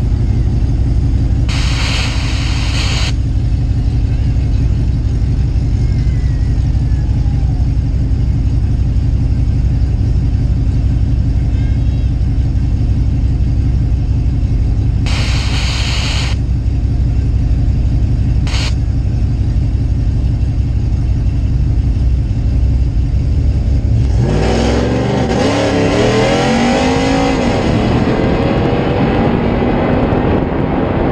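Cammed Ram Hemi V8 truck engine idling at the start line with a steady low rumble, broken by three short hisses. About four-fifths of the way through it launches and revs up hard, the engine pitch climbing through the gears as the truck accelerates down the drag strip.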